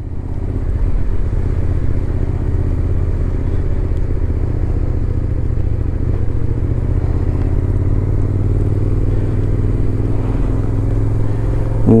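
Suzuki Gladius 400's V-twin engine running steadily at low speed through a slip-on exhaust, heard from on the bike, its pitch edging up slightly near the end.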